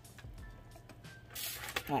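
Aluminium foil lining a baking pan crinkling briefly: a short rustle about one and a half seconds in, over a faint low steady hum.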